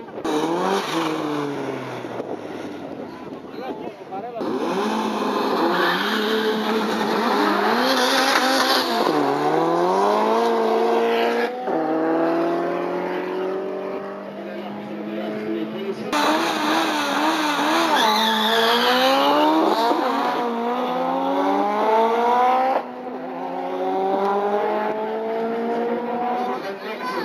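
Drag-racing cars at full throttle accelerating hard away down the strip, the engine pitch climbing and dropping back at each gear change. The sound breaks off suddenly about halfway through, and a second full-throttle run follows that breaks off suddenly near the end.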